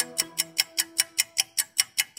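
Fast clock-ticking timer sound effect, about five ticks a second, over a held musical tone that fades out partway through: the cue for a one-minute countdown.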